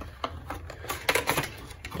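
Packaging of a makeup blender sponge being handled and opened, giving a string of irregular light clicks and rustles.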